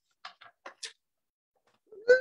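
A few short, faint clicks in the first second from a Scotch ATG adhesive tape gun being run along a paper strip, testing freshly threaded tape.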